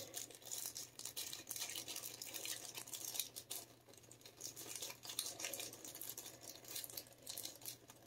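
Faint, irregular rustling and light clicks of hands handling small items and packaging, over a low steady hum.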